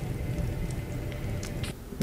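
Horror film soundtrack playing quietly: a low rumbling drone with a few faint, scattered clicks.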